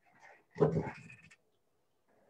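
A man says "thank" and laughs briefly, one short burst about half a second in, heard over a video-call connection.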